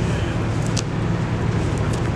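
Steady low rumble of outdoor city background noise, like distant road traffic, with no clear single event.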